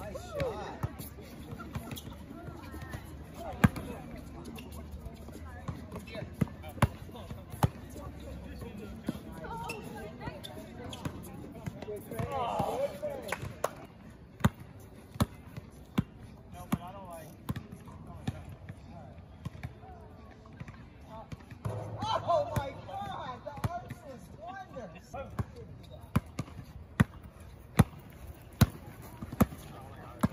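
A basketball bouncing on an outdoor hard court: sharp, irregular bounces all through, with players' voices calling out about twelve seconds in and again a few seconds past the middle.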